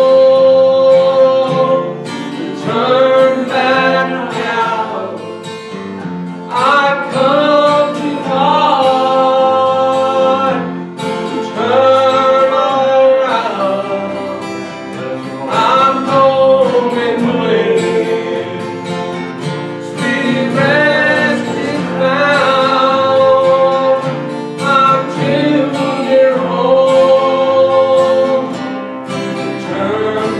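A man singing a slow gospel song in phrases of a few seconds, accompanied by a strummed acoustic guitar.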